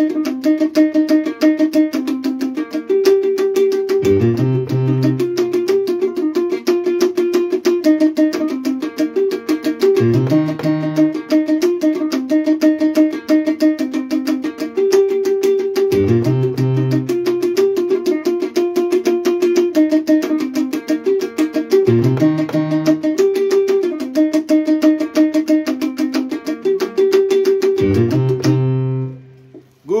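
Electronic keyboard played live with a plucked, guitar-like voice: a fast, even run of notes over a low bass figure that comes back about every six seconds. The playing stops abruptly near the end.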